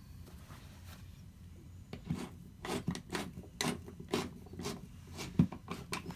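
Irregular small clicks and taps of hand tools and hardware being handled while a plastic ledge shelf is refitted to drywall with a screwdriver and wall anchors. It is quiet at first, with a run of clicks starting about two seconds in and the sharpest tap near the end.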